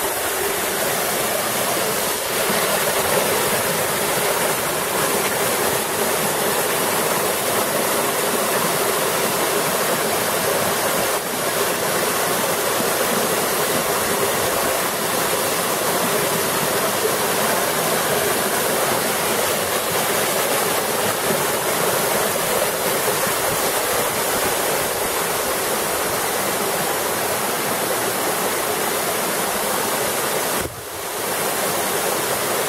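Caledonia waterfall in Cyprus's Troodos Mountains, a tall mountain waterfall falling onto rocks: a steady, unbroken rushing of water.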